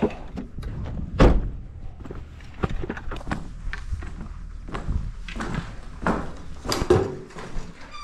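A car door shutting about a second in, followed by footsteps on pavers and the irregular knocking and clatter of a plastic bucket and metal snake tongs being carried, with another sharp knock near the end.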